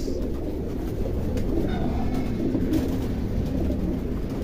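Many racing pigeons cooing at once in their loft, a steady low murmur of overlapping coos.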